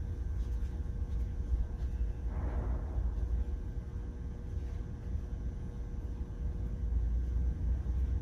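Indoor room tone: a steady low rumble with a faint constant hum, and a brief soft rush of noise about two and a half seconds in.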